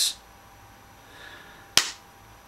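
Quiet room tone, then a single sharp click near the end.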